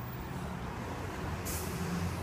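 Road traffic rumbling steadily, with a short high hiss starting about one and a half seconds in.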